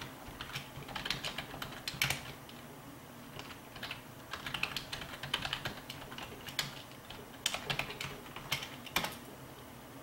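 Typing on a computer keyboard: irregular runs of fairly quiet key clicks with short pauses between them.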